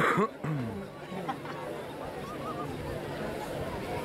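Rugby players shouting and calling to each other on the pitch as a lineout forms. A loud shout comes right at the start, with a voice dropping in pitch just after, followed by scattered shorter calls.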